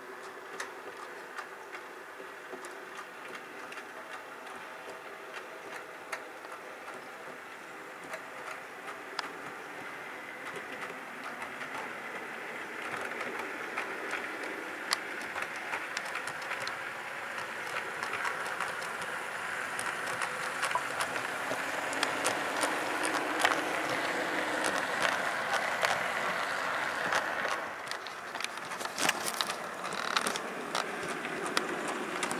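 OO gauge model diesel locomotive and coaches running on the track: a steady motor whirr with many sharp wheel clicks over the rail joints. It grows louder through the second half as the train comes closer, dips briefly near the end, then picks up again.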